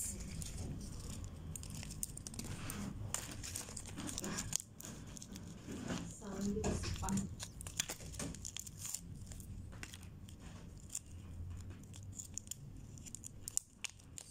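Hands crinkling and tearing open a small paper surprise-toy wrapper, a run of light irregular crackles with short rips.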